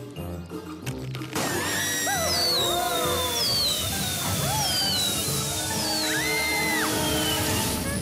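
Cartoon sound effect of a giant cupcake, pumped up with a floor pump, bursting and gushing frosting. About a second and a half in, a loud steady rushing noise starts and holds for about six seconds, with repeated falling whistles and a few short squeaky pitch sweeps on top, over background music.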